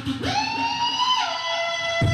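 A beatboxer's voice holding a long, pitched, siren-like note: it swoops up quickly, holds high, then drops a step about a second in and holds the lower note.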